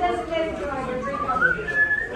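Voices talking, then a shrill whistle that rises in pitch over about a second and holds a high note near the end.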